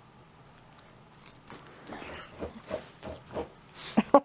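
Miniature schnauzer whining in a run of short whimpers, starting about two seconds in and growing louder toward the end, begging for attention or play.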